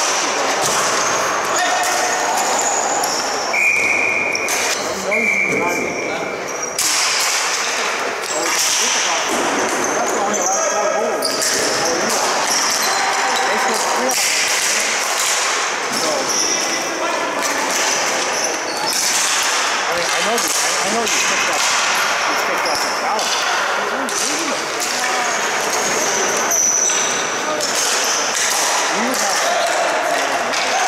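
Ball hockey game play echoing in an arena: a run of sharp knocks as sticks hit the ball and the concrete floor, over a steady din of players' indistinct shouts.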